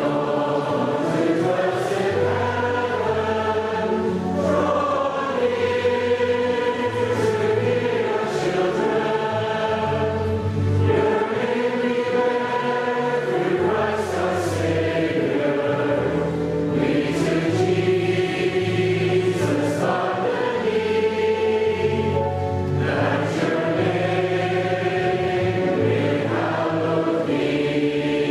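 Choral music: a choir singing long, held notes over a slowly changing low bass line.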